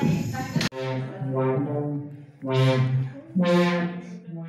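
Brass-like synthesizer notes played from a cardboard DIY MIDI controller: several low held notes with short gaps between them. They begin abruptly under a second in.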